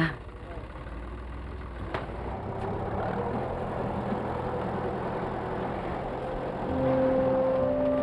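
A motor vehicle's engine running, with a low hum at first. The sound then grows steadily louder, like an approaching vehicle. Soft sustained music notes come in near the end.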